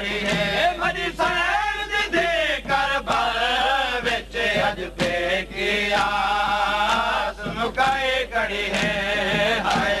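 A noha, a Shia mourning lament, chanted by a male voice in a continuous, rising and falling melody.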